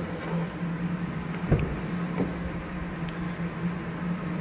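A steady low hum with a soft knock about one and a half seconds in and a light click near the three-second mark, as the pickup's door-panel switches are handled.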